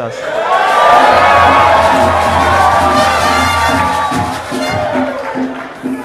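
A room full of people cheering and whooping together, swelling about a second in and dying away near the end.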